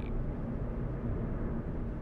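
Steady low rumble of background noise with no speech.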